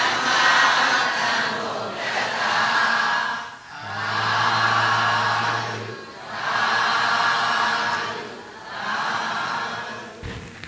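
A group of voices chanting together in long swelling phrases, a new one every two seconds or so. A low steady hum sounds under the middle of it.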